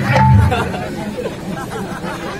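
Actors' voices over a public-address system, with stage music accompanying them. A low held note fades out about half a second in.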